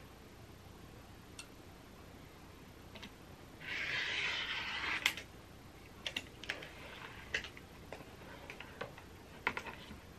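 Rotary cutter slicing fabric along a ruler on a cutting mat: a faint rasp lasting about a second and a half near the middle, then a sharp click and scattered small clicks and taps as the ruler and cutter are handled.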